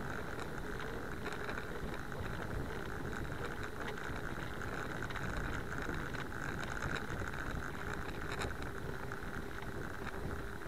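Steady rushing of wind on the microphone and tyre noise on asphalt from a moving bicycle, with a few faint clicks.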